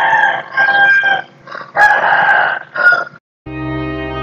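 Bird calls: a run of about five loud cries, several with long held notes. Sustained music chords come in near the end.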